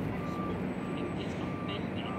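Street background noise, a steady low traffic rumble, with a faint high beep repeating just under twice a second.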